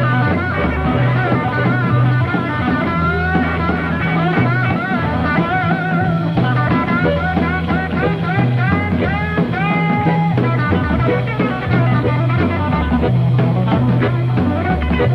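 Electric blues band playing: a Stratocaster-style electric guitar takes the lead with bent notes over a steady bass line and drums.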